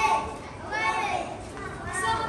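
Children's voices shouting and calling out, high-pitched, in a couple of calls that rise and fall, the strongest about a second in.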